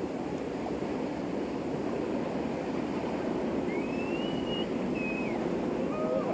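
Steady low rushing riverside ambience, slowly growing louder, with a brief high gliding whistle about four seconds in.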